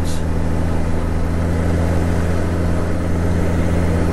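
Honda Gold Wing GL1800 motorcycle under way: its flat-six engine running at a steady low hum under an even hiss of wind and road noise.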